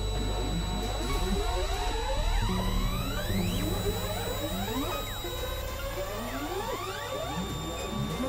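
Experimental synthesizer drone music: a low droning bass that shifts pitch in abrupt steps, under many overlapping tones gliding up and down in curved sweeps, with a few steady high tones held above.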